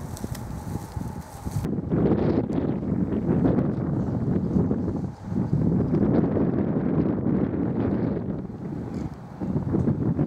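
Strong gusty wind buffeting the microphone. In the first couple of seconds plastic sheeting flaps and crackles in the wind. Then a heavier rumble of wind on the mic swells and eases in gusts, with a short lull about five seconds in.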